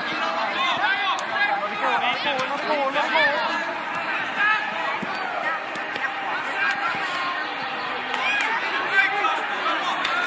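Indistinct overlapping voices of spectators and young players calling out and chattering around a youth football pitch, with no clear words.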